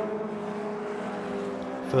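Racing cars' engines running hard on track, a Renault Clio and a Toyota Celica among them, heard as one steady engine drone whose note sags slightly and then lifts again near the end.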